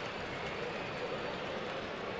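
Steady background noise of a ballpark crowd, an even murmur with no distinct shouts or impacts.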